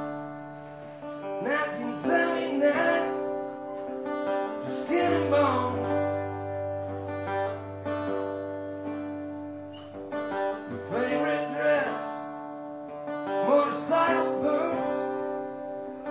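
Steel-string acoustic-electric guitar strummed in short bursts, with its chords left ringing between them and a low bass note held through the middle.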